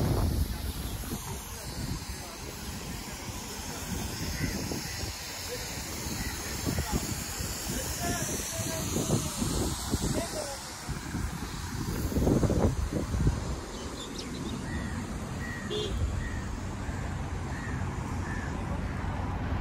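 Outdoor street ambience: wind gusting on the phone microphone with an irregular low rumble, loudest a little past the middle, and a few short bird calls, a string of them near the end.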